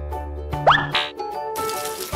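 Children's background music with a cartoon 'plop' sound effect, a quick upward-sliding tone, about two-thirds of a second in. Near the end comes a noisy burst as the bottle of balls bursts and the balls spill out.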